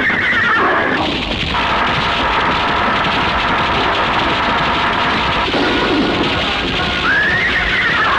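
Horse whinnying twice, a rising-then-falling call about a second long: once in the first second and again near the end. Behind it is a loud, dense soundtrack of galloping and music.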